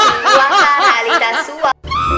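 Distorted, high-pitched laughter edited into a cartoon: a quick run of short chuckles, about four or five a second, that cuts off suddenly near the end.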